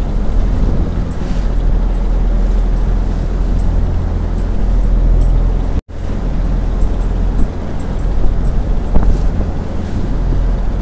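Small wooden fishing boat's motor running steadily as the boat moves through choppy water, with wind on the microphone and water rushing along the hull. The sound drops out for an instant just before six seconds in.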